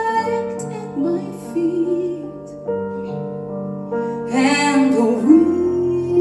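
A woman singing live over piano accompaniment. She holds long notes with vibrato over sustained piano chords, with a gap in the voice in the middle while the chords carry on.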